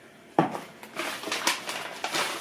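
Kitchen clatter while a coffee maker is filled with water: a sharp knock about half a second in, then a run of clinks.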